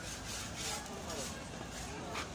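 Street market ambience: indistinct voices of passers-by with a few short rustling, rubbing sounds close by.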